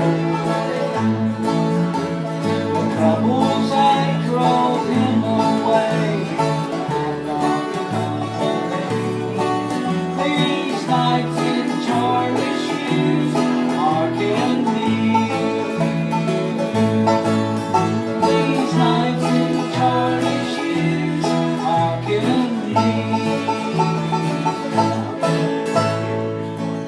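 Bluegrass band playing: banjo and acoustic guitars picked together at a steady tempo.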